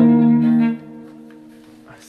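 Electric guitar sounding a two-note power chord on the A and D strings (8th and 10th frets). It is struck once and rings loud for under a second, then is damped and carries on faintly.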